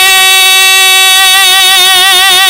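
A man's amplified singing voice holding one long note in a marsiya (Shia elegy) recitation, steady at first and wavering slightly toward the end.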